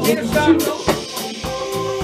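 A live jam band playing. A drum kit keeps a steady beat under electric bass and guitar.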